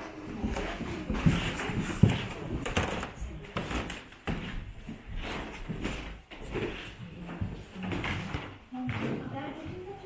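Indistinct voices of people talking in a room, mixed with footsteps and knocks, two of them sharp about a second and two seconds in.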